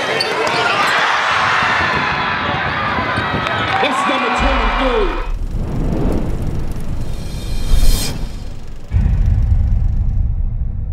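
Basketball game sounds in a gym, with crowd noise and shouting voices, for the first half. Then comes a logo sound effect: a low rumble, a rising whoosh about eight seconds in, and a sudden deep boom a second later.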